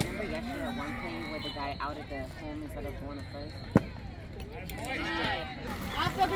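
Distant voices of spectators and players calling out across the ballfield, with one sharp knock a little under four seconds in.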